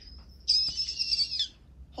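A phone ringtone sounding for about a second: a high, warbling tone that signals an incoming call.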